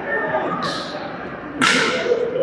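A badminton racket striking a shuttlecock: a light, short hit about half a second in and a louder, sharper hit near the end, over murmured voices.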